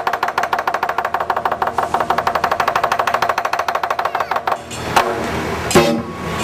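Lion dance drum and cymbals playing a rapid, even roll that stops about four and a half seconds in, followed by a couple of louder single strikes near the end.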